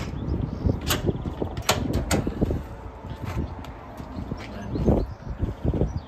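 Stainless-steel warming cabinet doors being unlatched and opened: a few sharp metallic clicks and clanks in the first two seconds, then dull thuds near the end, over handling noise.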